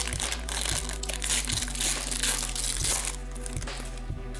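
Foil trading-card pack wrapper crinkling as it is handled, a dense crackle that dies down about three seconds in, with faint background music underneath.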